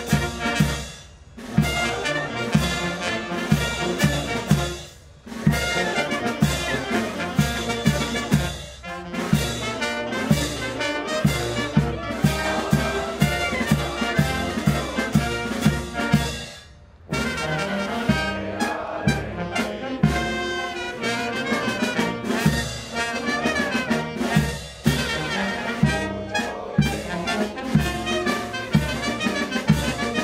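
Brass band playing a march for the flag-raising: trumpets and trombones over a steady bass drum beat of about two a second, with short breaks between phrases.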